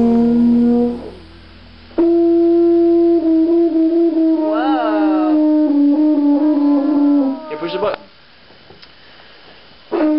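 Large silver tuba blown in long held notes. A short note ends about a second in. After a pause, one long steady note of about five seconds sags lower at its end. A short blip follows, then a couple of seconds of near quiet.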